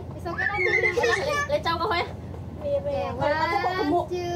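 High-pitched voices of women and small children chattering and calling out over each other, with a drawn-out rising call near the end.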